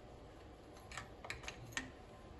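About four light, sharp clicks in quick succession from a compression tester hose being handled and fitted into a spark plug well on an engine's valve cover.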